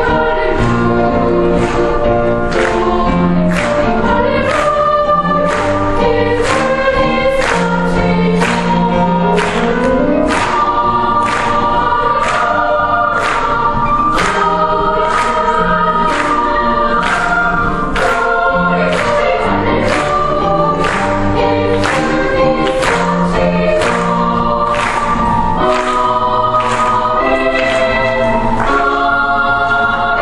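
Children's choir singing in parts with piano accompaniment, over a steady, regular beat.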